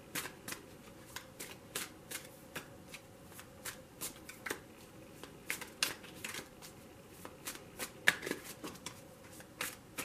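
A deck of tarot cards being shuffled hand to hand, overhand style: an irregular run of light card slaps and clicks, a few a second.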